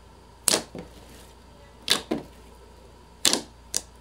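Thick, glossy slime being poked and squeezed by fingers, giving sharp pops as pockets of trapped air burst. There are about five pops, some in quick pairs.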